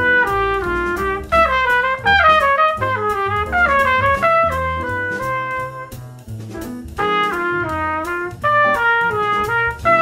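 Solo trumpet playing a jazz practice pattern note by note: each chord's root together with its two shell notes, the third and the seventh. The line steps through the tune's changes, with a short break about six seconds in.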